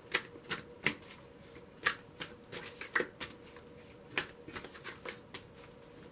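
A deck of tarot cards being shuffled by hand, giving a run of irregular sharp card snaps and slaps, a few each second.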